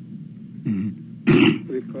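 A man clearing his throat once: a single short, harsh burst a little past the middle, with a brief voiced sound just before it and speech picking up again near the end.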